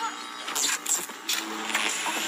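Video message soundtrack: background music with a few short, noisy mechanical sound effects, about half a second apart, as a fantasy machine starts up.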